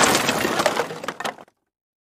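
Smash sound effect for a wooden crate bursting apart: the tail of the crash, with scattered cracks and clinks of falling debris, fading out about a second and a half in.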